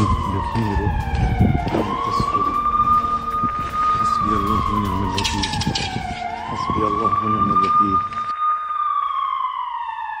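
A siren wailing: its tone holds high, slides slowly down and swoops quickly back up, about every four and a half seconds. Voices sound beneath it for much of the time.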